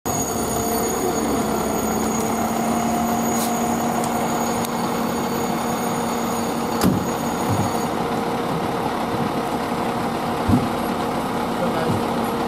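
Fire engine's diesel engine running steadily as the pumper manoeuvres at low speed, a constant hum with a high whine that stops about eight seconds in. A few brief sharp knocks are heard, one about seven seconds in.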